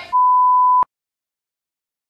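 A steady 1 kHz test-tone beep, the tone played over TV colour bars, lasting just under a second and cutting off suddenly.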